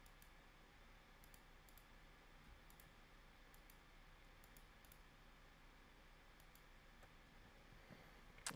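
Near silence, with about a dozen faint, irregular clicks of computer input: mouse and keyboard clicking while modelling.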